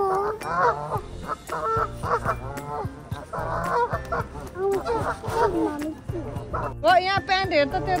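Geese honking repeatedly, a string of short calls one after another.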